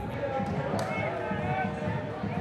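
Live sound of a football match: several voices calling out across the pitch, overlapping, with dull thuds of the ball being kicked.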